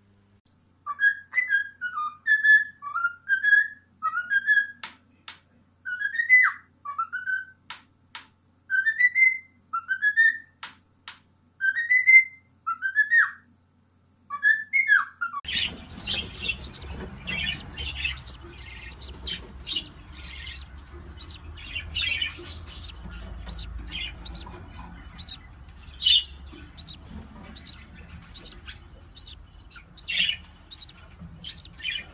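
A conure gives a series of short upward-sliding whistles, about one a second, in quick groups. About halfway through, budgerigars take over, chirping rapidly and high over a steady hiss.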